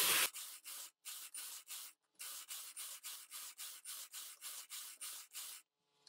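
Brother knitting machine carriage run back and forth across the needle bed, knitting plain rows: a rapid series of short rasping swishes, about five a second, with two brief breaks, stopping just before the end.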